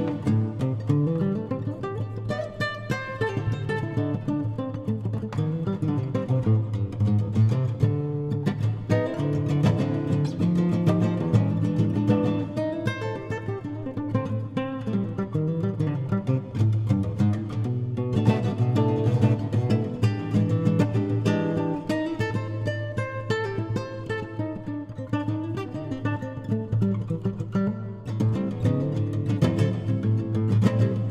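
Solo fingerstyle funk improvisation in A minor on a cutaway nylon-string guitar: fast plucked single-note lines and chords over sustained low bass notes, played without a break.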